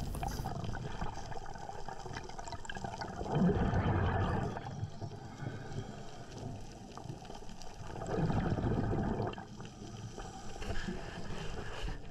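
Underwater sound of a diver's exhaled air bubbling up: two long bubbly rushes about five seconds apart, over a steady wash of water noise.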